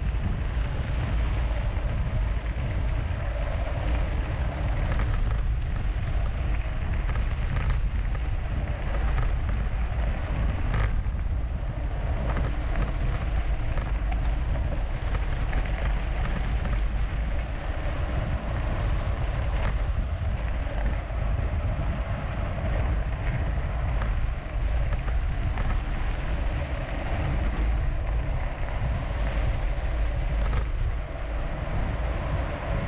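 Steady wind buffeting the microphone of a camera on a mountain bike at speed, over the rumble and hiss of knobby tyres rolling on gravel. A few sharp clicks and rattles from the bike come through, the clearest about eleven seconds in.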